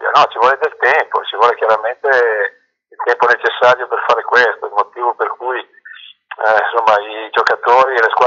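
Only speech: a man talking in Italian, with two short pauses about two and a half and six seconds in.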